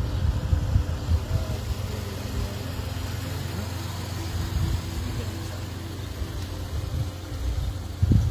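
Steady low rumble with faint voices in the distance.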